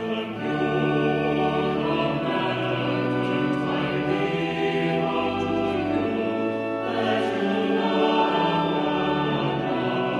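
A choir singing a hymn with instrumental accompaniment, in slow sustained chords that change every second or so.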